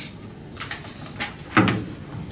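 Handling noise at a lectern: a few light clicks, then one dull thump about one and a half seconds in, as something is set down or knocked close to the microphone.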